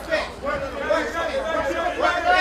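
Overlapping voices of several people calling out and talking over each other cageside, with no clear words.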